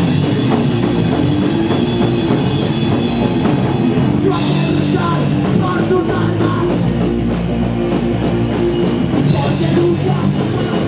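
Live band playing loud, distorted guitars over a drum kit, with no vocals. Cymbals tick in a regular pattern for the first four seconds, then open into a continuous wash.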